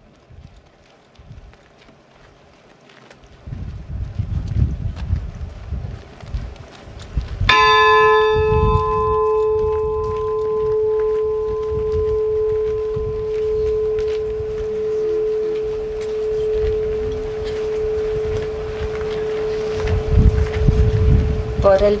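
A single stroke on a bell hanging in a wooden bell tower, struck about seven seconds in. It rings on as a long hum with bright higher overtones that die away first, and the main tone fades only slowly and is still sounding at the end.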